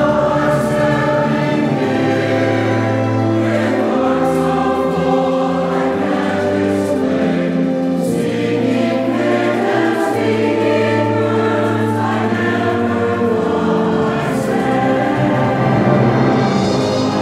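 Mixed choir singing with an orchestra of strings and flute, in held chords over a low bass line that moves every few seconds.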